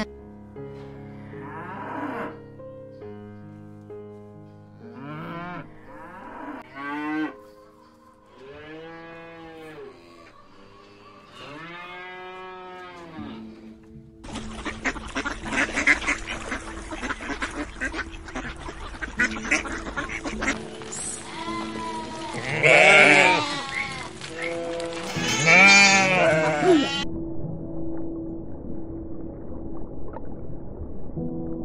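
Cattle mooing, a run of calls that rise and fall in pitch, over soft piano music. About halfway through, white domestic ducks take over, quacking repeatedly and loudly. Near the end only the piano remains.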